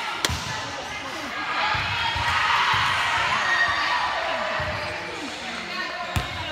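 A ball bouncing a few dull thuds on a hardwood gym floor, with a swell of overlapping girls' voices chattering and calling in the middle.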